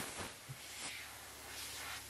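Compressed-air blow gun hissing faintly as it blows rinse water off a washed sheet-metal panel to dry it before priming, the air rising and falling a little and thinning out near the end.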